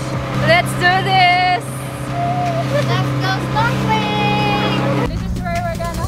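Boat engine running with a steady low hum, with people talking and laughing over it.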